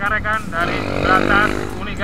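A person's voice heard over the steady running of trail motorcycle engines.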